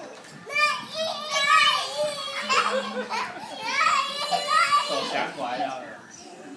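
Young children's high-pitched voices shouting and calling out in play, in several loud bursts starting about half a second in and dying down near the end.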